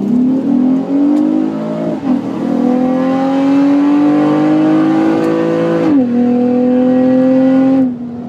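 2012 Honda Accord's 3.5-litre J35 V6, with an aftermarket intake and a J-pipe with an exhaust cutout, at full throttle down the drag strip, heard from inside the cabin: its pitch climbs steadily through the gears, with upshifts about one, two and six seconds in. The sound drops away suddenly near the end as the throttle is lifted.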